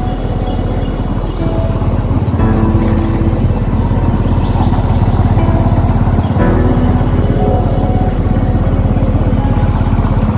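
A vehicle engine running steadily, a low rumble, with music playing over it.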